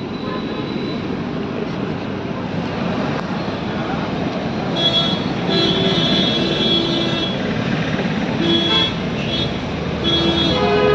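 Road traffic noise, with vehicle horns sounding from about five seconds in: one long honk of nearly two seconds, then a short one near the end.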